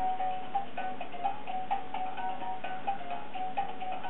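Fisher-Price Rainforest baby gym's electronic music box playing a simple tinkling melody of short stepping notes, with light ticks. The music is set off by the baby tugging and shaking a hanging toy, the gym's on-demand mode.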